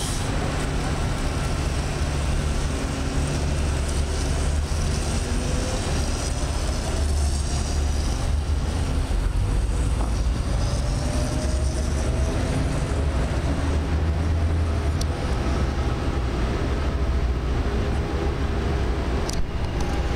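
City street traffic noise: a steady low rumble of passing vehicles, with a faint whine that rises slowly in pitch around the middle.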